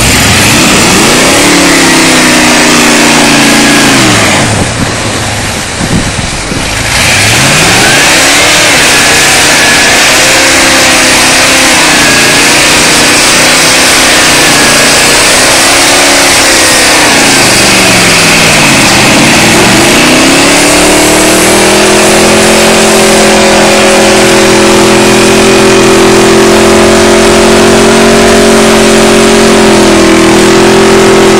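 A lifted Dodge four-wheel-drive truck's engine revving up and down over and over as it pushes through deep, wet snow, then held steady at high revs for about the last ten seconds. It drops away briefly about five seconds in, and a constant rushing hiss runs over it.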